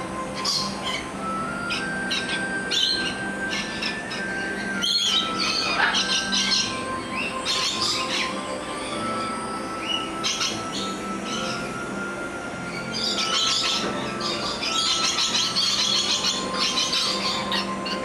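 Lorikeets calling in short, high-pitched chattering bursts and squawks, coming in clusters and busiest near the end, over faint background music.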